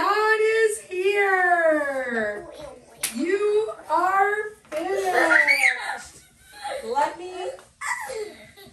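Young children's high-pitched voices calling out and squealing, with long drawn-out sounds whose pitch slides up and down, and short pauses between them.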